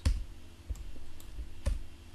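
A few separate clicks of keys pressed on a computer keyboard while text is deleted in a code editor. The loudest clicks come right at the start and again near the end.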